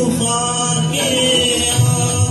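A man singing a Hindi film song into a microphone over a recorded backing track, his voice gliding between held notes.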